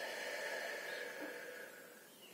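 A woman's long, slow exhale, fading out after about a second and a half.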